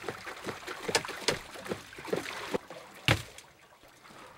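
Water sloshing and splashing as a plastic mesh basket of fresh shrimp is shaken in a tub of water, sifting the shrimp from the small fish caught with them, with a run of small clatters and one sharp knock about three seconds in.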